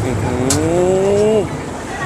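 A man's long, drawn-out "mmm" hum, rising slightly in pitch and ending about one and a half seconds in. It sits over a steady low background rumble, with one sharp click about half a second in.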